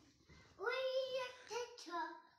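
A small child's high voice singing two long held notes, the second one starting about three-quarters of the way in.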